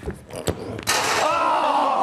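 A rugby ball kicked with a single thud about half a second in, followed by a group of onlookers shouting out together in one long collective cry as the trick-shot kick only just misses.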